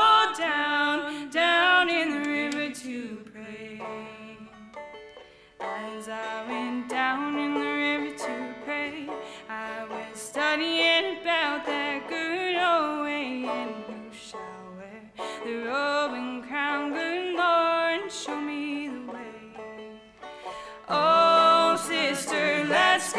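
Acoustic string band playing an instrumental passage with no singing: five-string banjo picking, with a sliding melody line carried over the picked notes. The music eases off twice and swells again about a second before the end.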